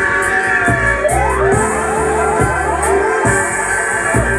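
Roots reggae/dub record playing loudly on a sound system: a deep bass line under a steady beat, with a gliding tone that dips and then climbs about a second in.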